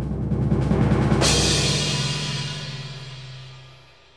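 Timpani roll played as a drumroll effect, rapid strokes building to a sudden final crash about a second in, then ringing out and fading away over the next few seconds.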